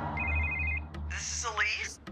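A telephone ringing: a short electronic trill of two pulsed tones lasting about half a second, over a low steady drone. A voice follows about a second in.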